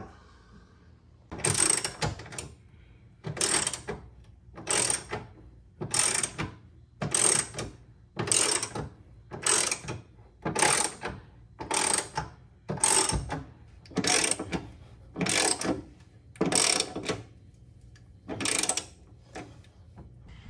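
Hand ratchet wrench tightening a bolt on the truck bed's tie-down anchors: a short burst of ratchet clicking on each swing of the handle, repeating about once a second, some fifteen times.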